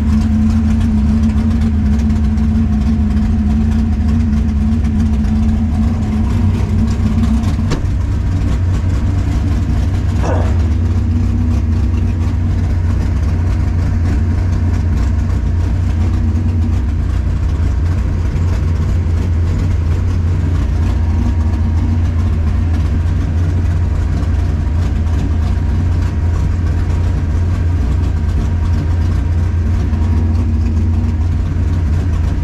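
1964 Chevelle drag car's race engine idling, heard from inside the cabin as a loud, steady, low-pitched idle. A brief faint chirp sounds about ten seconds in.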